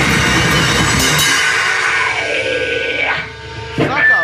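Grindcore band at full volume, with distorted electric guitar and a pounding drum kit, stops dead about a second in. Afterwards the guitar amplifier rings out with a sustained high whine that bends in pitch. A loud shout breaks in near the end.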